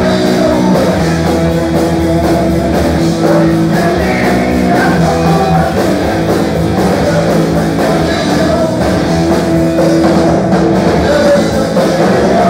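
A rock band playing loud and live: electric guitar, bass guitar and drum kit, with a singer's voice on top.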